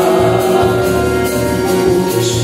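Live band playing: electric guitar, keyboard and a metal shaker, with a long held note and a steady low beat.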